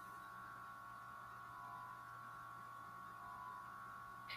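Faint room tone: a steady electrical hum with a few steady higher tones held underneath it.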